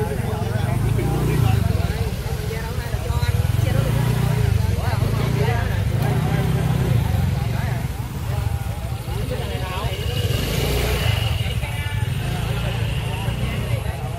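Motor scooters riding slowly past one after another on a dirt path, their small engines swelling and fading as each goes by.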